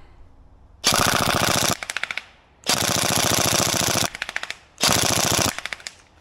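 Tokyo Marui MP5SD NGRS electric airsoft gun firing on full auto: three rapid bursts of shots, the middle one the longest, each trailing off in a few quieter clicks.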